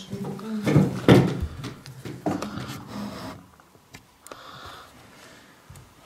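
Handling noise: fabric rustling and rubbing against the camera's microphone, with a few soft knocks. It is loudest about a second in, with more scrapes around two and three seconds, then quieter.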